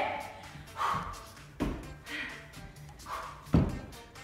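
Two dull thuds about two seconds apart, the second the louder, as feet land on a wooden floor during burpees, over background music.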